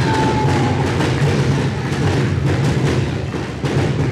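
Audience clapping, with many separate claps, over a steady low hum.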